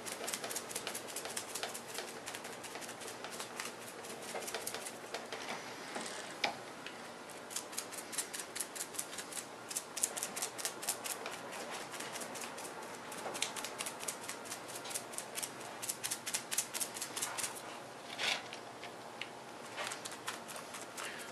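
A bristle brush stippling resin into fiberglass cloth on a mold: a long run of quick, soft dabbing taps, several a second, coming in bursts.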